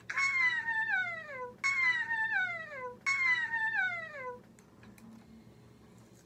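A high-pitched wailing cry, heard three times in a row, each call sliding steadily down in pitch for about a second and a half; the three calls are nearly alike.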